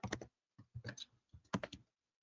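Computer keyboard typing in three short bursts of keystrokes, with brief pauses between them.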